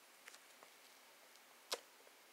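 Near silence: faint room tone, with one short click near the end.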